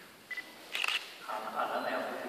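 A camera shutter clicking just under a second in, followed by soft voices.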